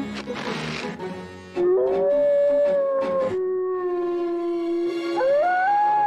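Cartoon wolf howling in long held notes, starting about a second and a half in; near the end the howl rises sharply to a higher held pitch. Background music plays along.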